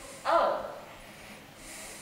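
A person's single short, breathy exclamation of "oh", acting out a sudden realization.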